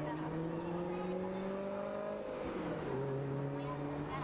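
Road traffic at a busy city intersection: a car's engine hum slowly rises in pitch, then drops about two and a half seconds in as it goes by, over a steady background of street noise and voices.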